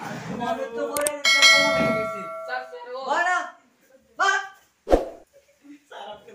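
A sharp metallic clang about a second in that rings on for a second and a half like a struck bell, followed by a few short voice cries and another sharp hit near the end.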